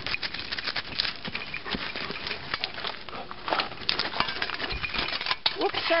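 A dog digging hard in soil among stones: rapid, irregular scraping and scratching of its paws in dirt and gravel.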